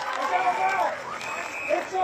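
Voices of players shouting and calling to each other out on a football field, heard at a distance, with a faint high steady tone for part of the time.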